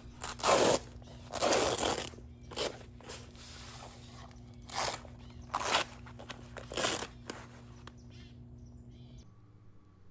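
Crinkly polyester TV cover being handled: fabric rustling and Velcro flaps being pulled apart and pressed together, in about six short bursts with a quiet stretch near the end.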